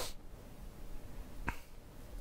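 Low room tone in a pause, broken by a short sharp click right at the start and another single short click about a second and a half in.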